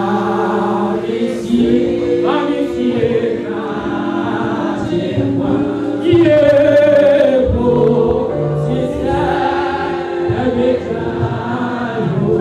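Group gospel singing with long held notes sounding under a changing melody.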